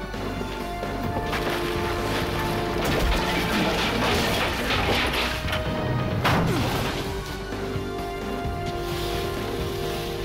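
Film score music under a loud stretch of crashing, clattering noise from a fight, with one sharp smash about six seconds in; afterwards the music carries on alone.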